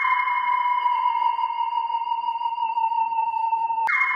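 Two sustained electronic tones, like a sonar ping or theremin drone. One is held steady while a lower one drifts slightly downward. Near the end a click breaks in, and the lower tone slides down again.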